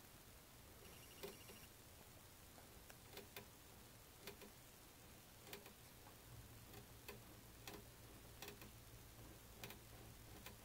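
Near silence with faint, irregular small clicks and taps, roughly one every second or so: handling noise from a homemade metal-and-string head-mounted camera rig.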